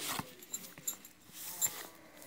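Paper and card rustling and scraping as a stamped card is slid out of a paper pocket in a handmade journal, with a few light taps.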